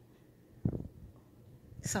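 A short, low thud about two-thirds of a second in, fading quickly, followed by a few faint small knocks or rustles.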